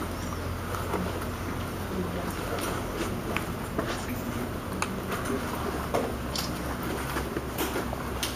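Riot-gear arm guard being pulled on and strapped: scattered short clicks of straps and clips and rustling of the padded armour, over a steady low room hum.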